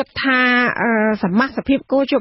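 Speech only: a voice talking in Khmer, with one long held syllable in the first half.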